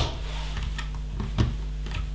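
Plastic LEGO bricks clicking as they are pressed onto a wall section and handled. One sharp click comes at the very start, then a few lighter clicks, the clearest about one and a half seconds in.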